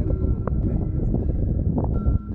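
Wind buffeting the camera's microphone: a loud, steady low rumble.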